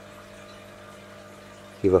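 Steady low background hum, faint next to the voice, then a man starts speaking near the end.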